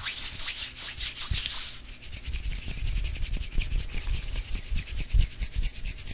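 Hands and fingers rubbing together right up against a microphone for ASMR: a fast, continuous dry rustling, with soft low bumps now and then.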